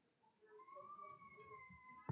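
Near silence: room tone, with a faint, high, slightly arching held tone from about half a second in.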